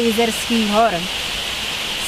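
A waterfall's water rushing steadily, an even hiss that is left on its own for about the second half after a voice ends a word.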